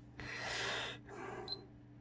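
A person breathing out hard: a noisy breath under a second long, then a shorter, weaker one, followed by a brief sharp click about a second and a half in.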